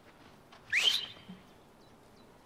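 A single short, shrill whistle, rising sharply in pitch and then held for a moment, a little under a second in.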